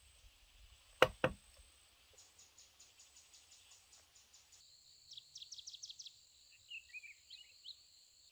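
Two sharp knocks of a tool striking wood about a second in, the first the louder. Then forest insects buzz faintly with a high steady tone and a rapid pulsing trill of about five pulses a second, and a bird chirps several times in the second half.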